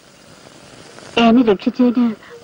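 Speech: a line of dialogue begins about a second in, after a short stretch of faint hiss.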